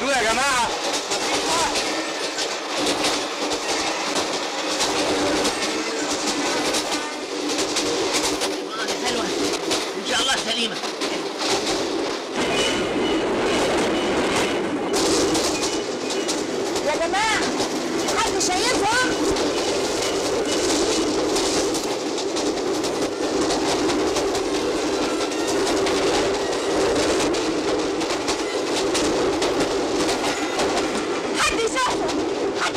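Passenger train running at speed: a steady rumble with the clatter of the carriages' wheels on the rails.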